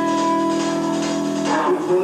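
Live rock band playing: a sustained, ringing chord is held, then about one and a half seconds in it breaks into a run of changing notes.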